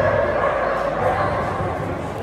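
A dog barking, with voices in the background.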